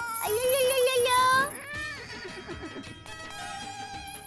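Comic background music with shimmering, tinkling high notes. Over it, a voice makes a drawn-out, wavering sound in the first half before the music thins out.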